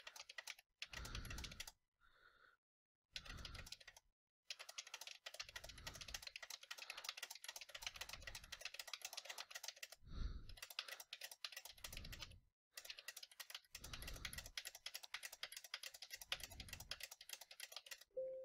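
Faint typing on a computer keyboard: quick, steady keystrokes as single number keys and Enter are pressed over and over, with a few brief pauses.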